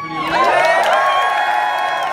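Audience cheering and shouting at the end of a song, starting about a third of a second in, while the last held guitar notes die away.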